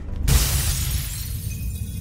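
Glass window shattering as a body crashes through it: a sudden crash about a quarter second in, the breaking glass fading over the following second, over low film-score music.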